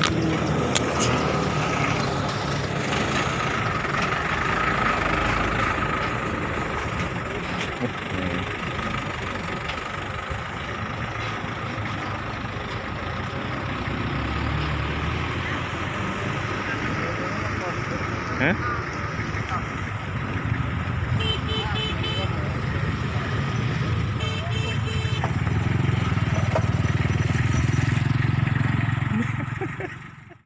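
Outdoor roadside noise with a motor vehicle running and indistinct voices; a low engine rumble grows louder near the end.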